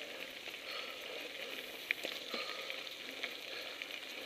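Mountain bike tyres rolling over a gravel dirt road: a steady crunching hiss full of small clicks, with one sharper click about two seconds in.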